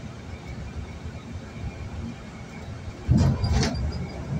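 Steady low road rumble of a car driving on a highway, heard from inside the cabin. About three seconds in, a louder noisy burst lasts just under a second.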